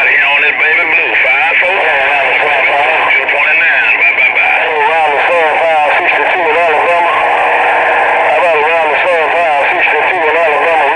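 President Bill CB radio receiving chatter on channel 6 through its small built-in speaker: distant stations' voices, thin, warbling and hard to make out, with a steady low tone under them.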